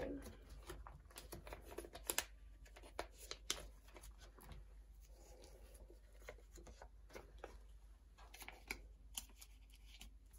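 Clear plastic binder pocket pages and card sleeves rustling and crinkling as photocards are handled and slid into pockets, with scattered light clicks and a couple of sharper ones about two and three and a half seconds in.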